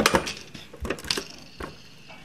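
A run of sharp plastic clicks from the Pie Face game's spinner as it turns and slows to a stop. The clicks come farther apart and grow weaker, then stop a little over halfway through.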